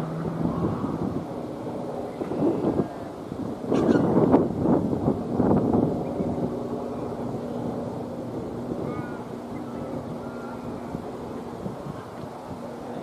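Outdoor ambience dominated by wind buffeting the microphone, with a low steady hum underneath; the wind noise swells louder for about two seconds from around four seconds in.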